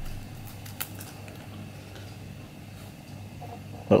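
Quiet room tone: a steady low hum with a couple of faint ticks about a second in.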